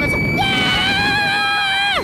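Riders screaming on the Booster Maxxx fairground thrill ride: one long high scream held at a steady pitch from about half a second in, breaking off with a sharp fall in pitch near the end.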